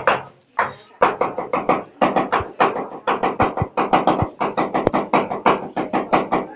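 A cleaver chopping red onion on a wooden board in rapid, even strokes, about seven a second, with a short pause about half a second in.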